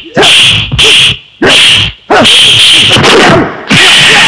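Silambam stick-fight sound effects: a quick string of swishing stick swings and cracks, about one every half second, with short shouts mixed in.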